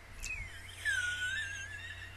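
A woman's high-pitched squeal: a quick falling glide, then a wavering held note for about a second.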